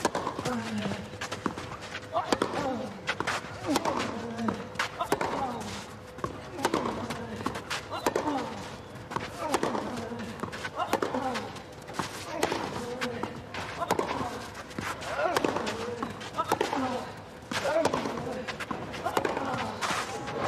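Tennis rally on a clay court: racquets strike the ball about once a second, each hit a sharp pop. Many of the hits come with a short grunt from the player.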